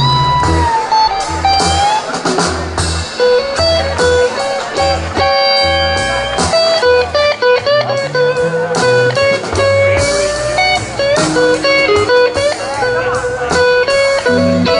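Live blues band in an instrumental break: an electric guitar plays lead lines of held and bending notes over bass guitar and drums.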